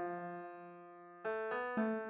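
Piano-style keyboard chords opening a trap beat instrumental, with no drums yet. One chord rings and slowly fades, then three chords follow about a quarter second apart in the second half.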